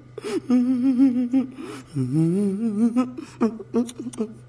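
A voice singing a wavering, wobbling tune in two long held phrases, the second starting low and sliding up.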